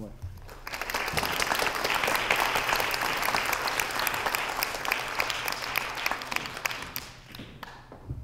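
Audience applause, a crowd clapping that swells about half a second in, holds, and dies away near the end.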